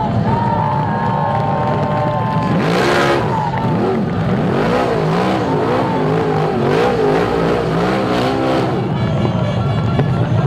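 BriSCA F1 stock car's V8 engine revving up and down over and over as the car spins on the shale, the engine note rising and falling about once a second. Short noisy bursts break in several times from about three seconds in.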